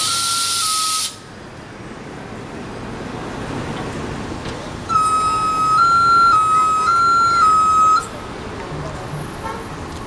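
NABI 40-SFW transit bus at a stop: a loud hiss of released air, with a two-tone electronic warning chime over it, cuts off about a second in. About five seconds in, the bus's warning chime sounds for about three seconds, stepping back and forth between a low and a slightly higher beep, with street traffic behind it.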